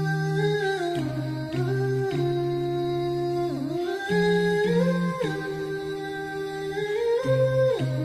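Background nasheed: a voice humming a slow melody of long held notes that slide from one pitch to the next.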